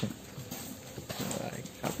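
Hooves of a Limousin-cross head of cattle clopping slowly on concrete as it is led on a rope, a heavy animal that cannot walk fast.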